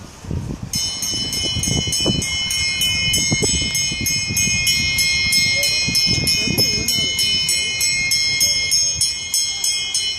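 Track lap bell rung rapidly and continuously, several strikes a second, starting about a second in: the bell signalling the final lap of the 800 m. Voices underneath.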